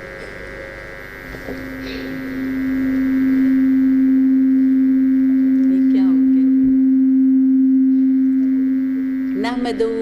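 Public-address microphone feedback: a single steady low tone that builds up over about two seconds, holds, and eases off near the end.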